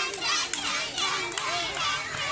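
A crowd of children shouting and chattering at once, many high voices overlapping, with a few short sharp clicks about half a second and a second in.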